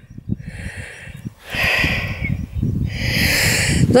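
A walker breathing audibly, three breaths about a second apart, over a low, uneven rumble of wind on the microphone.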